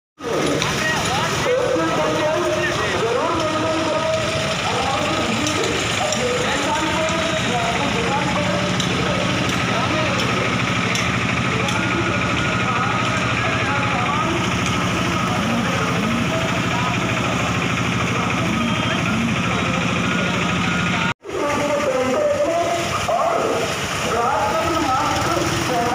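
Slow-moving police vehicles with their engines running, under a steady wash of voices that the recogniser could not make out. The sound cuts out for a moment about 21 seconds in.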